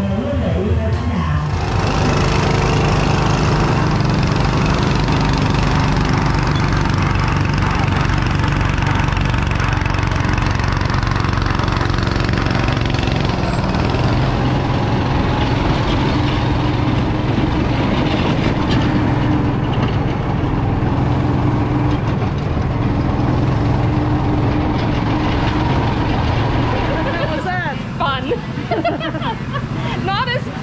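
Small engine of an amusement-park racing car (go-kart) running steadily while under way, its note shifting about halfway through.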